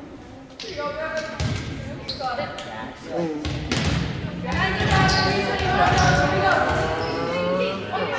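A volleyball bouncing a few times on a gym's hardwood floor between points, under players' voices calling and cheering that swell through the second half, all echoing in a large gymnasium.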